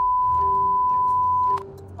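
A single steady censor beep, one flat high tone that cuts off abruptly about one and a half seconds in, masking a name spoken in a phone call.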